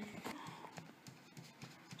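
Faint, irregular light taps and clicks.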